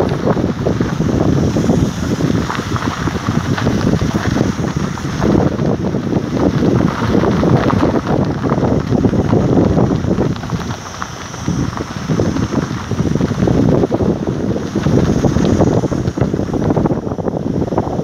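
Wind buffeting the microphone: a loud, gusty rumble that swells and dips, dropping briefly around ten seconds in.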